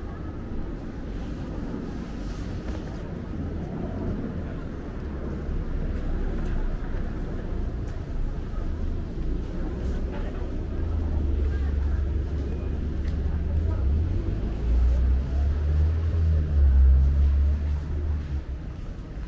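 Urban street and market-arcade ambience: a steady low rumble that grows louder in the second half, with faint voices in the background.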